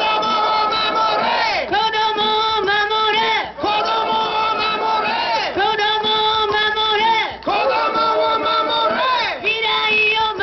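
Anti-nuclear protest chant: amplified voices over a PA with a crowd, calling slogans in repeated phrases of about two seconds, each held and then falling in pitch at the end.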